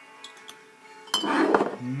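Empty brown glass beer bottles being handled on a counter. There are a couple of faint taps, then a sharp glass clink with a short ring about a second in, followed by a brief burst of noise.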